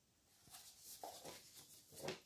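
Faint rustling and handling of a paper picture book as it is moved and lowered, beginning about half a second in, against an otherwise near-silent room.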